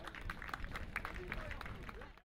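Scattered hand claps from a group of rugby players applauding as they walk off the pitch, several claps a second, fairly quiet, with faint voices in the background.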